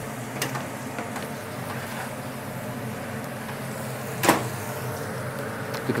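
Steady hum of kitchen machinery with a small click just after the start and one sharp clank about four seconds in, as the oven is opened to check the roasting pork belly.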